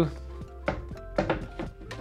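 A wooden art panel is handled against a maple floater frame with a few light knocks, then drops into the frame with a sharp wooden thunk at the very end. Quiet background music runs underneath.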